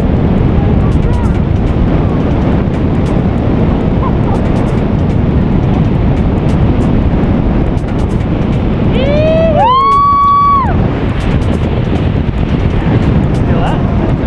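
Steady wind rushing over the camera microphone during a tandem parachute descent. About nine seconds in comes a person's high whoop, a short rising cry and then a held high note of about a second.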